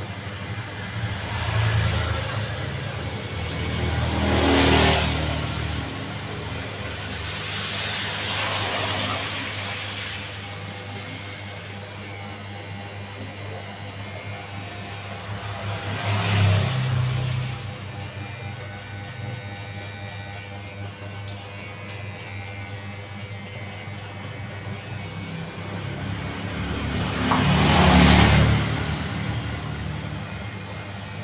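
Electric hair clipper buzzing steadily as it trims short hair during a buzz cut, the sound swelling louder several times.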